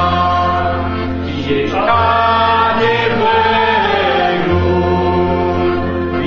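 A group of voices singing a Christian hymn in unison, over a sustained low bass note that changes every second or two.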